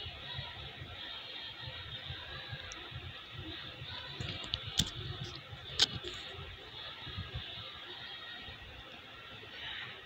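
Quiet kitchen room noise with two sharp clicks about five and six seconds in, typical of small plastic ingredient bowls knocking against a mixing bowl as they are emptied into beaten-egg filling.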